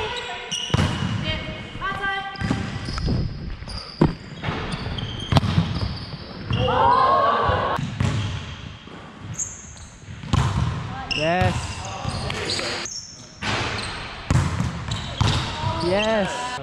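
A volleyball thudding as it is struck and bounces on a hardwood court, a scatter of sharp hits echoing in a large indoor sports hall. Players' voices and shouts come and go, the loudest a drawn-out shout about seven seconds in.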